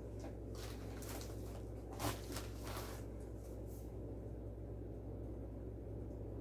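Soft rustling of paper and packaging being handled while mail is unpacked, a handful of brief crinkles in the first four seconds, then quieter. A steady low hum runs underneath throughout.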